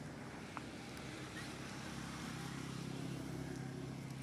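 A low, steady motor-engine hum that grows a little stronger after about two seconds, with a short click about half a second in.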